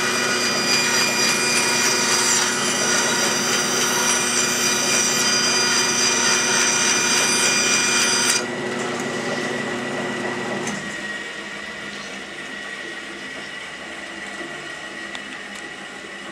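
Wood-cutting bandsaw cutting a curve through a wooden board: a steady machine whine with a cutting hiss that stops suddenly about eight seconds in. The saw then runs on more quietly, and its sound falls away gradually toward the end.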